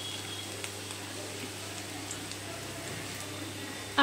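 Rice-and-gram-flour pakoras deep-frying in hot oil in a kadhai: a steady sizzle with fine crackles.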